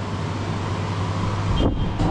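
Steady hum and hiss of air conditioning. About one and a half seconds in there is a short rumble of wind on the microphone.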